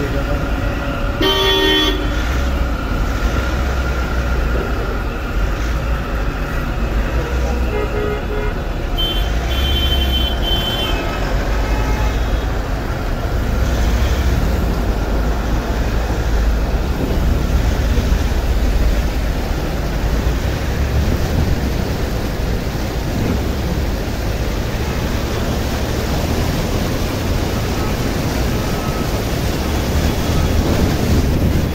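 Traffic moving through a flooded road: vehicle engines running with a steady low rumble, and horns honking briefly about two seconds in and again around ten seconds.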